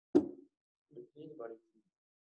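A single short, sharp pop just after the start, then faint snatches of speech about a second in.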